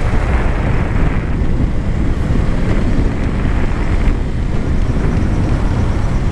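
Steady wind rushing over the camera's microphone on a moving motorbike, mixed with the motorbike's engine and tyre noise.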